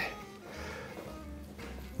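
Quiet background music with a low steady hum beneath it.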